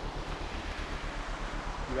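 Wind on the microphone over a low rumble that pulses evenly several times a second.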